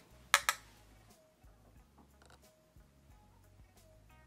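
Two sharp clicks about a third of a second in, half a second apart, from a plastic eyeshadow palette compact being handled; after them only faint, thin wavering tones in the background.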